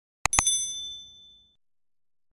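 Notification-bell sound effect from an animated subscribe end screen. Two quick clicks are followed by a bright bell ding that rings out and fades within about a second.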